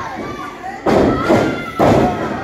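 Two heavy thuds of a wrestler's body hitting the ring canvas, about a second apart, echoing in the hall over crowd voices.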